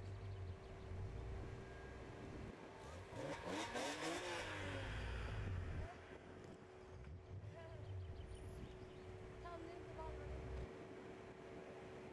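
Car engine revving up as it accelerates, its pitch rising about three seconds in and dropping away around the six-second mark, over a steady hum and low rumble.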